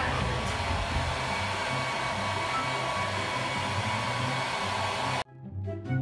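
Handheld hair dryer running steadily on a wet dog's coat, then switched off abruptly about five seconds in. Background music plays underneath.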